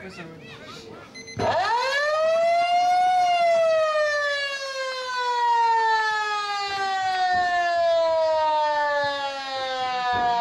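Football ground's siren sounding full time. It starts about a second and a half in, climbs quickly in pitch, then holds one long, slowly falling wail.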